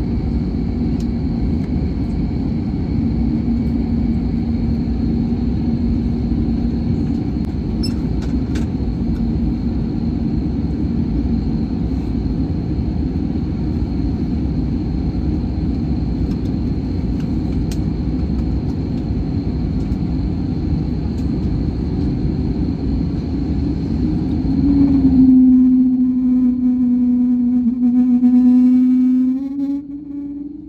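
Jet airliner cabin noise from a seat over the wing: a loud, steady engine and rolling rumble while the plane is on the ground. About 25 seconds in, the sound changes suddenly to a loud steady engine hum that rises slightly in pitch, then fades near the end.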